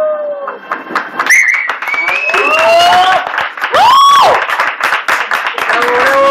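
The last held note of the tango music dies away, then an audience claps and cheers, with whoops and calls of approval. One long, loud whoop comes about four seconds in.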